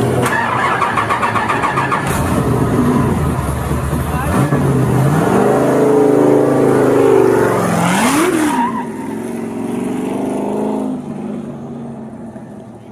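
Supercharged VW Baja Bug engine revving and pulling away, its pitch climbing from about four seconds in, a sharp rev up and back down around eight seconds, then running steadily before fading out near the end.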